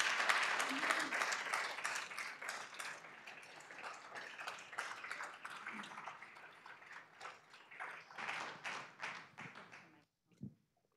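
Audience applauding, loudest at the start and thinning out gradually, down to a few scattered claps near the end.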